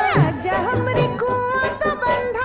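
Film song in a folk style: a woman's voice singing long held notes that slide between pitches, over a steady drum beat.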